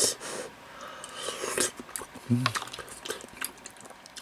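A person eating spicy soup: a loud slurp at the start, then chewing on chewy meat with small wet clicks, and a murmured "mm" a little past two seconds in.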